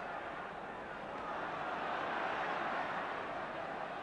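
Football stadium crowd: a steady wash of many voices from packed terraces, swelling a little midway.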